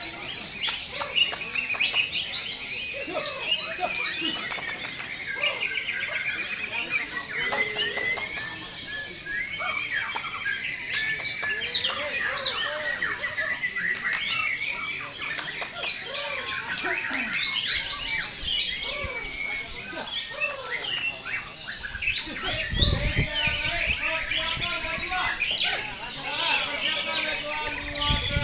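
Several caged white-rumped shamas (murai batu) singing at once. Their songs overlap in a dense mix of whistles, chirps and quick trills, with one short high whistle repeated again and again. A brief low rumble comes about three-quarters of the way through.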